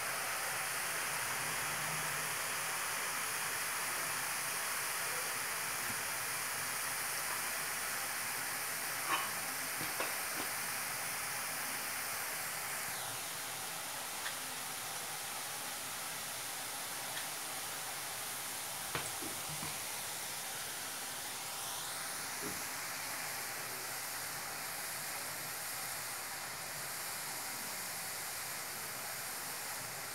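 Besan sev deep-frying in hot oil in an iron kadhai over a high gas flame: a steady sizzle that eases a little as it goes, with a few faint clicks.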